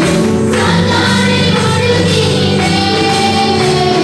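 A group of women singing a worship song together with live instrumental backing.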